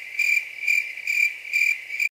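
An insect chirping in a steady rhythm of about four pulses a second, all on one unchanging pitch.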